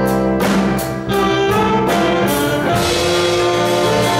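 Live jazz band with two saxophones, drum kit, electric guitars, bass and keyboard. Drum and cymbal hits drive the first two seconds, then the saxophones hold a long note.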